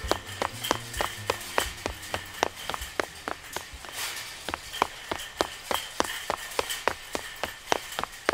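Quick, even footstep taps, about four a second, with a faint steady hum beneath.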